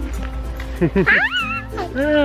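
A small child's high squealing laugh about a second in, over light background music.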